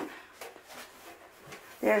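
Faint brief rustling and handling noise of tulle strips being looped onto an elastic headband, with a couple of soft clicks about half a second in.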